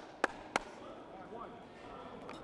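Basketball bounced on a hardwood gym floor: two sharp bounces in the first half-second, then the dribbling stops and leaves the hall's faint background murmur of voices.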